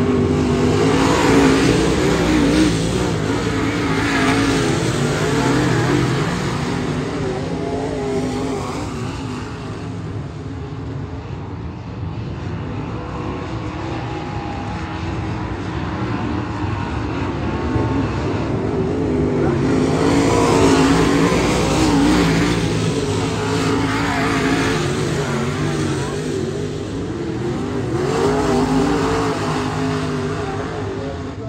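Several dirt-track race car engines at full racing speed, their pitch wavering as they go round the oval. The sound swells as the pack passes, dies down in the middle and swells again after about twenty seconds and once more near the end.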